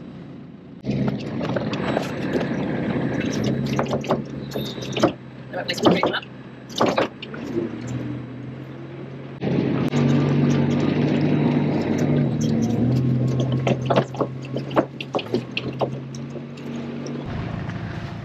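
Farm vehicle engine running steadily, heard from on board, with scattered knocks and rattles over it. It starts about a second in, gets louder about halfway through, and stops shortly before the end.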